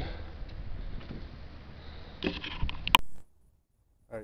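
Handling noise on a camera's own microphone: a steady low rumble, then a burst of rustling and clicks a little over two seconds in, ending with one sharp click just before the sound cuts off abruptly to silence.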